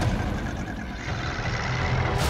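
Low, heavy rumbling drone of cinematic trailer sound design, with faint sustained tones above it.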